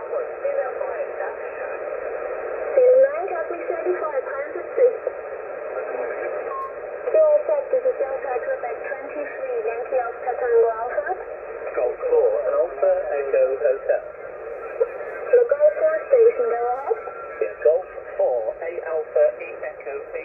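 Several amateur radio stations calling at once on single-sideband voice, a pile-up of overlapping, garbled voices received on a Yaesu FT-991A on the 40-metre band. The voices have the thin, narrow sound of SSB, with nothing below about 250 Hz or above about 2.7 kHz.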